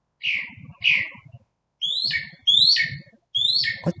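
A bird calling in the dark: two short falling calls, then three sharper calls that each sweep quickly down from high to mid pitch, evenly spaced about three-quarters of a second apart.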